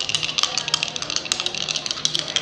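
Dice rattling: a dense run of rapid, irregular clicks, for the roll of the next numbers.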